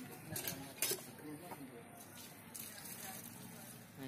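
Dry straw chaff (bhusa) rustling and crackling as it is pressed and levelled by hand on top of a woven bamboo grain bin, with two sharp crackles in the first second.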